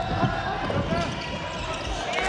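Basketball being dribbled on a hardwood gym court during live play, with players' voices calling out across the hall.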